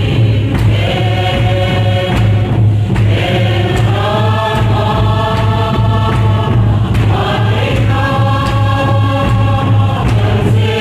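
A group of women singing together in long held notes, with a steady low hum underneath.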